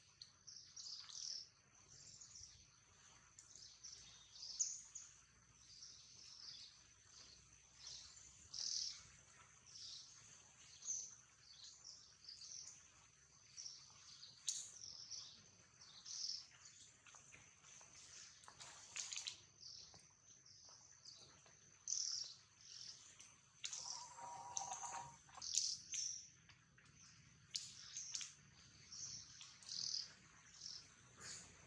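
Faint bird chirps repeating about every second over a steady high-pitched tone. A brief, lower pitched call sounds about four-fifths of the way through.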